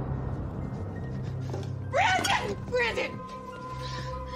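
Dramatic film score with a low sustained drone, and a woman's distressed cries breaking in about two seconds in and again a second later.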